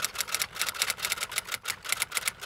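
Rapid typewriter-style key clicks, about ten a second, in a steady run, as a typing sound effect for on-screen text.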